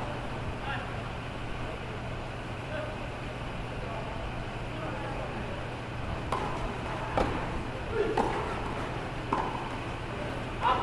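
Tennis balls struck by rackets in a doubles rally on a clay court: several sharp hits about a second apart in the second half, over a steady low hum.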